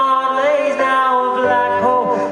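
Live band music with a male vocalist singing a drawn-out line of a pop-rock song over steady sustained chords.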